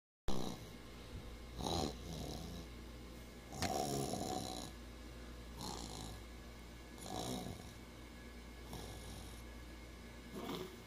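Snoring, one breath every one and a half to two seconds, with a sharp click about three and a half seconds in.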